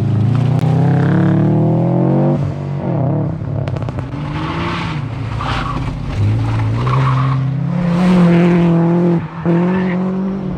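Rally cars accelerating hard on a stage, engines revving up through the gears with some tyre squeal: first a Subaru Impreza's flat-four climbing in pitch, then after a cut a BMW 3 Series coupe pulling hard, its engine dropping out briefly near the end on a shift.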